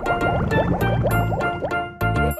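Cartoon bubbling sound effect, a rapid run of short rising bloops, as a submarine propeller churns bubbles, over children's background music.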